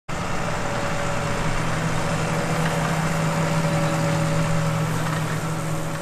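A tractor engine running steadily at an even speed, a loud low hum with a fainter higher whine over it.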